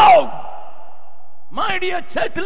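A man's single loud shouted cry into a microphone, falling steeply in pitch and ringing on in the hall's reverberation. After about a second's pause he starts speaking again.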